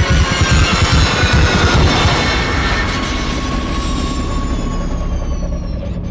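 Formula E car's electric drivetrain whine: several high, thin tones together that fall slowly in pitch over a few seconds, over a low rumble. A heavy low throbbing pulse runs under it for the first couple of seconds.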